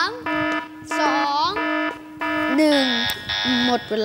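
Quiz-show countdown timer beeping in repeated, evenly spaced buzzer-like tones over a steady low hum as the last seconds run out.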